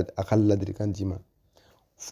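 A man speaking, then stopping a little over a second in, leaving a short pause before the end.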